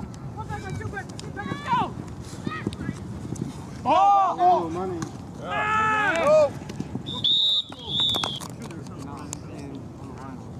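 Players shouting during a flag football play, then a referee's whistle blown in two short, steady high blasts about seven seconds in, stopping the play.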